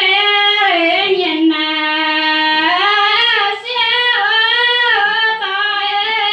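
A woman singing a Red Dao (Iu Mien) folk song solo into a microphone, unaccompanied. She holds long notes that bend and slide between pitches, with a short break for breath about three and a half seconds in.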